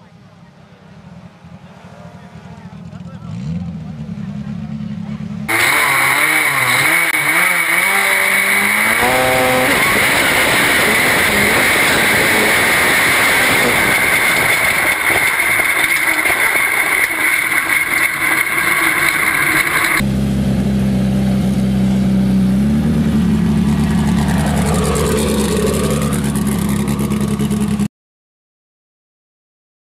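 Sand drag buggy's engine running hard. It builds over the first few seconds, then becomes suddenly much louder and closer, rising and falling in pitch as it revs. Near the end it settles into a steady drone that steps up in pitch once.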